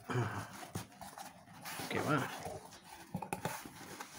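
Cardboard box being closed by hand, its flaps folded down over a thermocol liner with rustling and a few light clicks and taps. A short voice-like sound is heard twice in the background.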